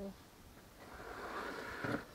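A plastic recovery traction board scraping as it is slid over sand, growing louder over about a second and ending in a short knock as it is set down against stones near the end.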